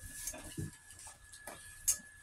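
A dog eating dry kibble from a stainless steel bowl: quiet, scattered clicks and crunches of kibble against the metal, with one sharper click near the end.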